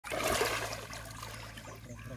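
Water splashing and sloshing close by, loudest in the first half second, then settling to a softer trickle.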